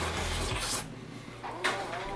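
Close-up eating sounds: a bite into a lettuce-filled sandwich and chewing, with a noisy crunch in the first second and another short one about a second and a half in.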